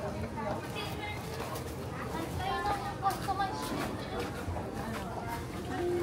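Indistinct voices of people talking in the background, with no clear words, over a steady outdoor hubbub.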